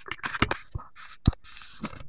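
Close handling noise from a hand rubbing and knocking against the camera: a run of scrapes and sharp knocks, the loudest about half a second in and again just past a second in. No chainsaw is running.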